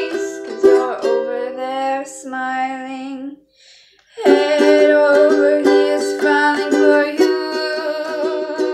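Chords strummed on an acoustic string instrument in a steady rhythm, breaking off for about a second near the middle, then resuming.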